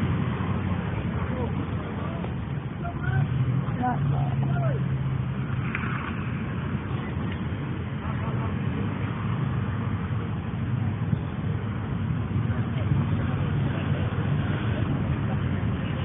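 Soccer-field ambience through a phone's narrow-band microphone: a steady rumbling noise, with faint distant voices of players and spectators calling out now and then.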